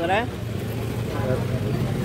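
Low, steady rumble of a vehicle engine running in street traffic, with no clear rise or fall.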